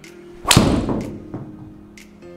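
A driver striking a golf ball: one sharp, loud crack about half a second in, ringing briefly in the room. Steady background music plays underneath.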